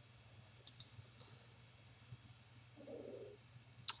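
A few faint computer mouse clicks, two close together less than a second in and another soon after, over a steady low hum.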